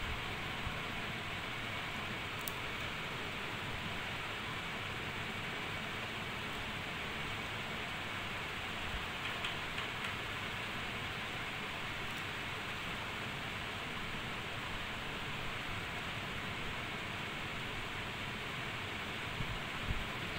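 Steady hiss of background room noise, with a faint high tone running through it and a couple of faint small ticks about nine to ten seconds in.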